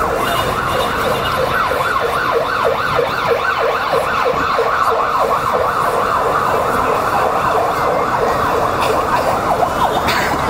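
Electronic siren sounding in a fast repeating yelp, its pitch sweeping up and down about three to four times a second without a break.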